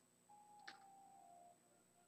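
Near silence: a brief gap in the speaker's audio feed.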